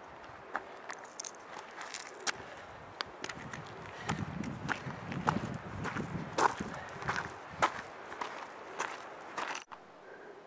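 Footsteps on a mountain trail, an irregular run of sharp steps about two a second that grows louder midway. The sound drops out abruptly near the end.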